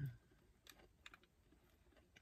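Faint sounds of a person eating fast food: a soft low thump as food goes into the mouth at the start, then a few small scattered clicks of chewing and handling the food.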